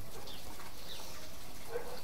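Steady outdoor background noise with a few faint, brief bird chirps.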